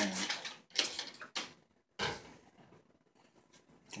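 A trigger spray bottle squirting water, a few short spray bursts about half a second apart, wetting 3000-grit sandpaper for wet sanding a CD.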